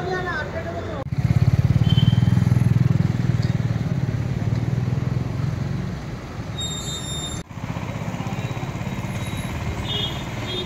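A motor vehicle engine running close by, a low rumble with fast even pulses, mixed with street traffic. It comes in loud about a second in, eases after about six seconds, and drops out briefly near the end before going on quieter.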